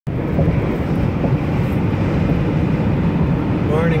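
Steady road noise inside a car cabin while driving at highway speed: a low hum with tyre and wind hiss, even throughout. A man's voice starts right at the end.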